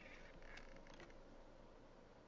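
Near silence: faint room tone, with a couple of soft, barely audible noises in the first second.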